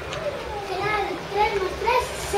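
Children shouting in high voices, several calls one after another, getting louder in the second half.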